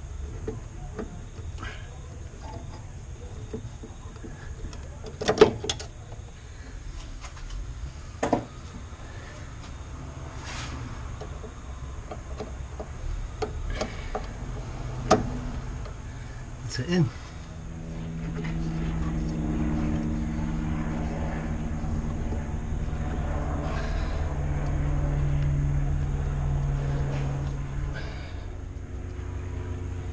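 Small metal clicks and knocks of hand tools and the clevis being worked into the brake pedal and master cylinder pushrod linkage, a few of them sharper. From about halfway through, a steady low engine-like drone runs under them for about ten seconds.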